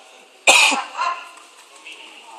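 A sudden, loud, harsh vocal burst from a person, like a cough or short shout, about half a second in, followed by a second, weaker one about a second in.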